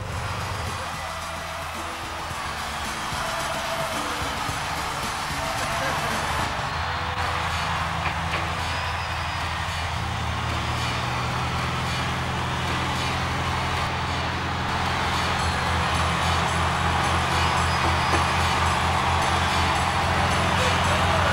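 Single-engine light plane's propeller engine running, building up and getting steadily louder as the plane moves onto the runway for takeoff. Band music plays over it.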